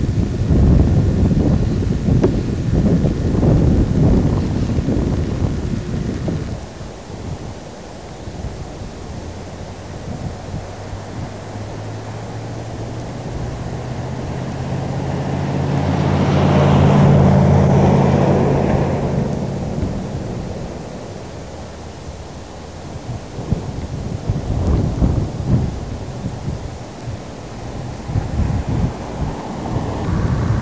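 Wind buffeting the camcorder microphone in gusts. Mid-way a motor vehicle passes: a low engine hum with tyre noise swells to a peak and fades again. The gusting returns near the end.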